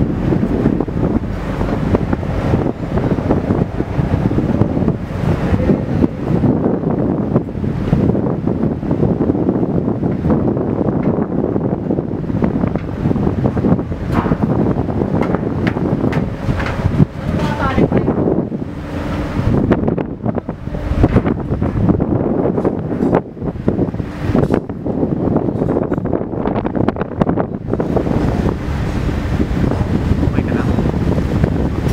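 Wind buffeting the microphone on the open deck of a moving ferry, gusting unevenly, with the low running of the ship beneath it.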